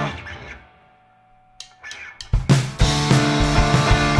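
A ringing electric guitar chord fades out, then a few quick drumstick clicks count in, and the two-piece punk band comes in loud about two and a half seconds in: electric guitar and full drum kit.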